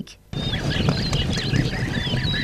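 A herd of horses with foals running over grassy ground, a steady drumming of hoofbeats, with birds chirping above it. It starts abruptly a moment in.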